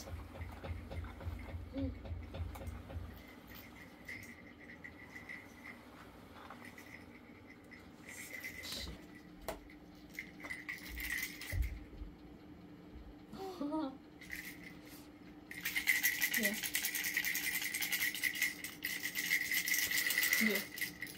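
Plastic baby toy rattle being shaken: short bursts of rattling partway through, then steady, continuous rattling over the last few seconds, the loudest sound here.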